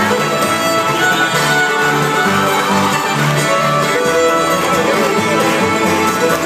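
Live acoustic string band playing an instrumental passage on fiddle, acoustic guitar and upright bass, with the bass notes marking a steady beat.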